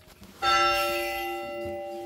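A church bell struck once about half a second in, its tone ringing on and slowly fading.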